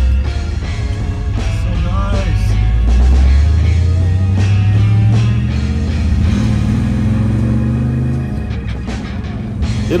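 Big-block 454 V8 of a first-generation Camaro accelerating, heard from inside the cabin under background rock music. The revs climb, dip about six seconds in as through an upshift of the four-speed, then climb again.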